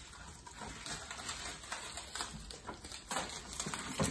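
Faint, irregular rustling and light taps of hands handling torn mica pieces close to the microphone.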